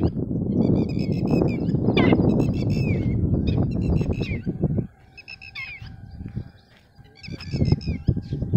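Birds calling with repeated short chirps, over a low rumble that fades about five seconds in and returns near the end.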